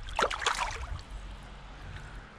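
A short splash and gurgle of water in the first second as a largemouth bass is released by hand and kicks away, followed by low, steady water noise.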